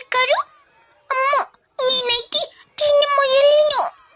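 High-pitched cartoon child's voice in four short utterances, the last and longest falling in pitch at its end, heard as complaining.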